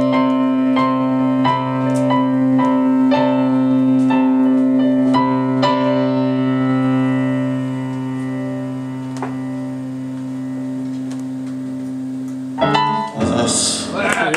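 Solo electric keyboard: a low chord held steadily under a melody of single notes at about two a second. The melody dies away halfway through while the chord rings on. Shortly before the end, a louder burst of band sound with guitar breaks in.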